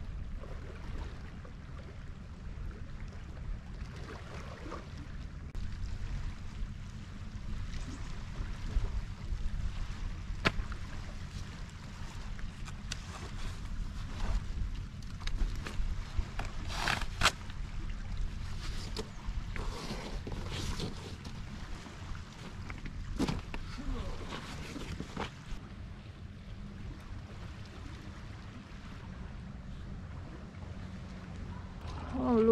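Steady low rumble of wind on the microphone over small waves lapping on a stony shore. Scattered sharp knocks and clatters of stones and gear, loudest about ten seconds in and a pair around two-thirds of the way in.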